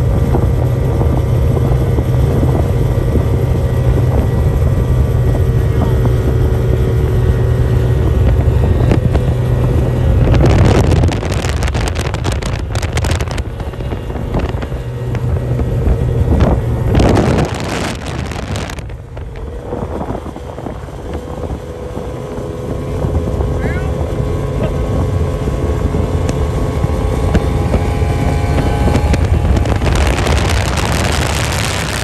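Race boat engines at high revs as outboard-powered race boats pass at speed, their pitch sliding as they go by. Wind buffets the microphone twice in the middle, and the engine sound builds again near the end as a boat comes close.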